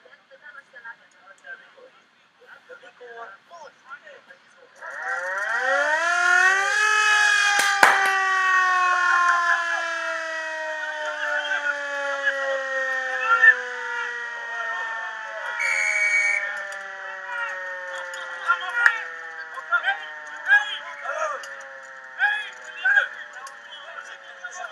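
A siren winds up for about two seconds, then its pitch falls slowly and steadily for many seconds, like a motor-driven siren spinning down. There is a sharp click shortly after it peaks and a brief high beep partway through its fall.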